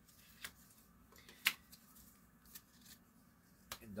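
Paper flashcards being handled: a few faint, separate clicks and light rustles about a second apart, one sharper snap about one and a half seconds in.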